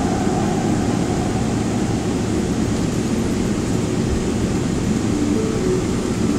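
Steady cabin noise of an airliner taxiing: a low rumble from the idling jet engines and the rolling aircraft, with the even hiss of the cabin air conditioning.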